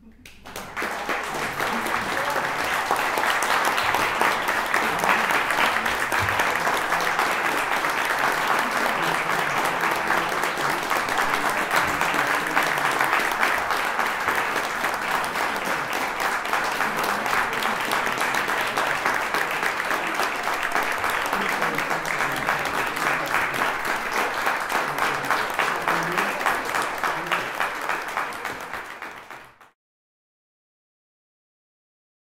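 Small audience applauding steadily after a chamber piece has ended, the clapping building up over the first couple of seconds and then cut off abruptly near the end.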